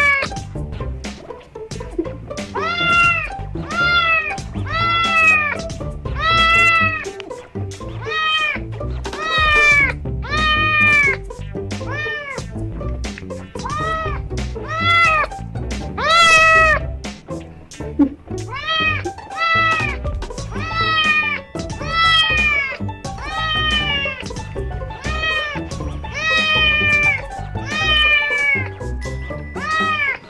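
Kitten meowing over and over, about once a second, each high call rising then falling in pitch. Background music plays under the calls.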